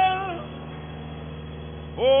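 A singer's long held high note ends with a downward slide about half a second in. A steady instrumental chord keeps sounding underneath, and a new sung note starts right at the end.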